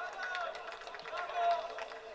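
Men's shouts and calls on a football pitch during open play, loudest about one and a half seconds in, with a few short knocks among them.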